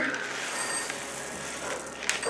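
Plastic sprinkles packet being torn open and crinkled, loudest about half a second in. Softer rustling follows as the sprinkles are tipped into a ceramic bowl.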